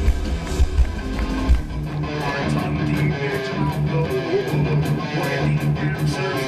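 Live heavy metal band playing loud: electric guitars over bass and drums. About two seconds in the heavy low end drops back, leaving a driving guitar riff with steady high ticks from the drums.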